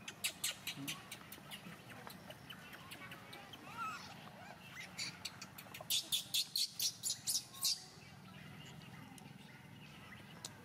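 Newborn macaque crying in short, shrill squeals: a brief bout at the start and a louder run of about eight, some four or five a second, about six seconds in. A softer wavering call comes just before the second bout.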